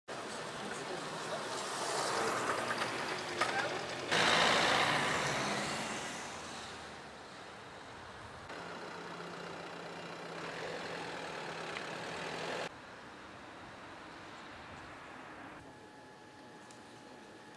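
Street sound over several cut-together outdoor shots: vehicle noise, loudest just after four seconds in and fading over the next two. A steady low hum follows in the middle, with voices in the background.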